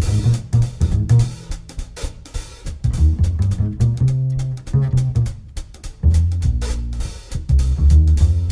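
Live jazz quartet music, with the double bass's low plucked notes and the drum kit's strokes to the fore.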